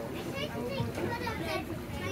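Children talking in high, rising and falling voices, over a steady low hum.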